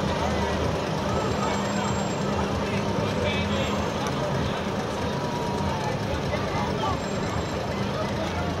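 Truck engine running low and steady as a flatbed float carrying people rolls slowly past, under the chatter of a street crowd.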